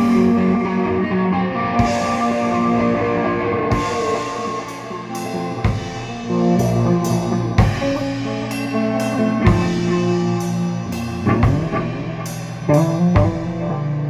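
Live doom metal played on electric guitar and drum kit: held guitar chords with sparse cymbal crashes at first, then the drums grow busier from about four seconds in.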